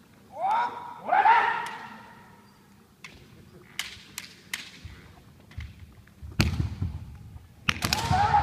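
Two kendo fighters' drawn-out kiai shouts about half a second and a second in, then scattered sharp clacks of bamboo shinai. Near the end come loud cracks of shinai strikes with heavy foot-stamp thuds on the hall floor as the fighters clash.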